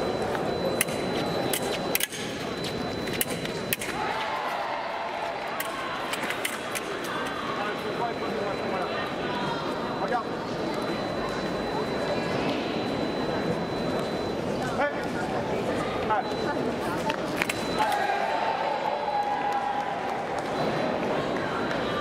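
Indistinct voices and general murmur in a large hall, with a cluster of sharp clicks in the first few seconds from foil blades and footwork on the metal piste during the bout's exchange, and a few isolated clicks later.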